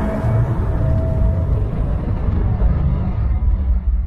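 Closing sound design of a horror film trailer: a deep low rumble with a faint held tone early on, the higher part of the sound dying away gradually toward the end.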